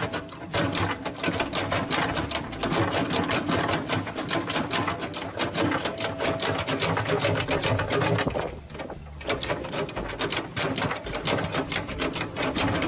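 A machine running with a rapid, even clatter of about six ticks a second, with a short break about eight and a half seconds in.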